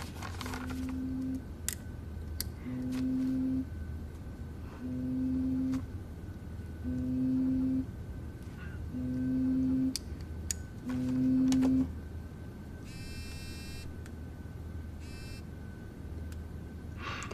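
A mobile phone ringing: a low electronic tone sounds six times, each about a second long with about a second between, over the rustle and tap of papers and a pen. After the ringing stops, a short harsh buzz sounds, followed by a shorter one.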